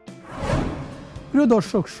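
A whoosh sound effect for an on-screen graphic transition, swelling up and fading away over about a second, over a soft background music bed.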